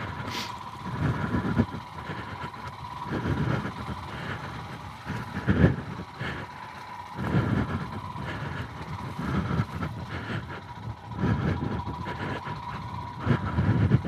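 Royal Enfield Himalayan's single-cylinder engine pulling at low revs in second gear over a rough grass track, its rumble swelling and easing every second or two. A thin steady high tone runs underneath.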